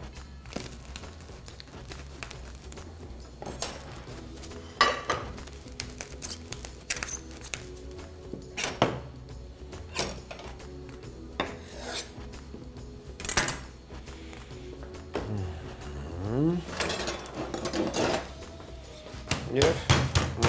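Background music with a scatter of sharp clicks, clatters and rustles as plastic cling film is pulled from its roll and smoothed over a slab of raw meat on a plastic cutting board.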